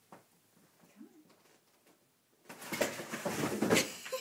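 A few faint clicks, then about two and a half seconds in, a large cardboard box rustling and scraping as it is handled and moved.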